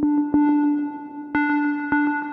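A Roland Aira S-1 synthesizer holding one steady mid-pitched note, retriggered three times with sharp attacks and ringing on between them under its delay and reverb.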